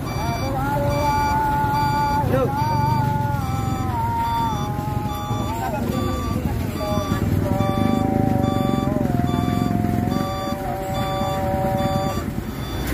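Heavy diesel trucks running under load with a low rumble, as a tow truck pulls a mired dump truck out by chains. A reversing alarm beeps at a steady rhythm, and a held whine shifts up and down in pitch a few times.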